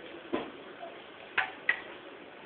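Three short sharp clicks: one about a third of a second in, then two close together past the middle.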